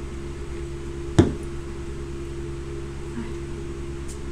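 Electric fan running with a steady hum, and a single sharp knock about a second in.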